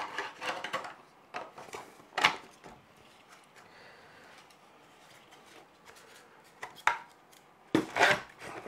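Hard clicks and knocks of 3D-printed plastic parts and metal hardware being handled during assembly: a quick cluster at the start, a sharp knock about two seconds in, a quiet stretch, then more knocks near the end.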